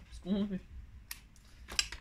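Scissors cutting card stock: a few short, sharp snips, one about a second in and the loudest near the end.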